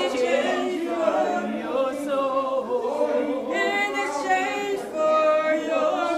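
A group of voices singing together without instruments, as a choir or congregation.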